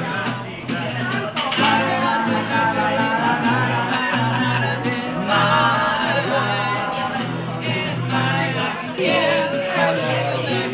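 Live singing with guitar accompaniment: a melodic vocal line over steadily strummed chords.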